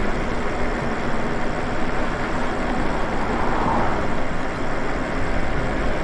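Steady rush of wind and tyre noise while riding a Lyric Graffiti electric bike along an asphalt street, an even, unbroken noise at constant loudness.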